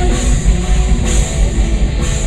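A live rock band plays heavy, metal-style rock on electric guitars, bass guitar and drum kit. A burst of cymbals comes about a second in.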